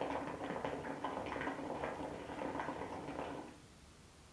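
Water bubbling in the glass base of an Elmas Nargile 632 Turkish hookah during one long draw on the hose, a steady gurgle that stops shortly before the end.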